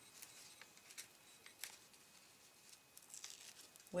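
Near silence with a few faint, scattered clicks and rustles: scissors and a foam adhesive sheet being handled on a craft mat.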